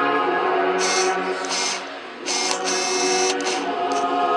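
A group of young men and women singing liturgical chant a cappella in sustained, held notes with hissing consonants, dropping briefly about two seconds in as for a breath.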